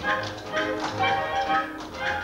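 Live pit band playing an up-tempo dance number, with sharp taps on the beat about twice a second.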